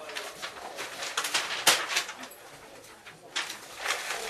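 Sheets of paper rustling and flapping, with several sharp snaps, against low wordless murmuring or cooing sounds from the performers' mouths.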